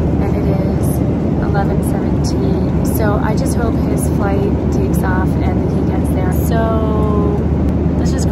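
Steady roar of a Boeing 737 airliner's cabin in flight, with a woman's voice talking quietly over it.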